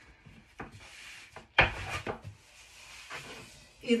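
A long thin wooden rolling pin rubs and rolls over floured phyllo dough on a wooden board in soft scratchy strokes. About one and a half seconds in comes one sharper, louder stroke.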